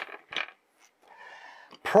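Metal hand tools clinking as they are put down and picked up: two sharp clicks near the start, then fainter handling noise.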